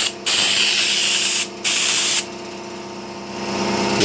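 Air spray gun with a 2.5 mm nozzle spraying thick speckled decorative paint: a loud hiss in two bursts with a short break between them, then quieter for about a second with a steady hum underneath, the hiss building up again near the end.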